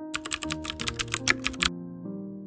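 Computer keyboard typing: a quick run of about fifteen keystrokes, roughly ten a second, that stops after about a second and a half, over soft piano background music.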